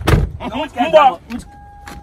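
A heavy thump at the start, then a short burst of voice, then a steady single-pitched tone that sets in about one and a half seconds in and holds.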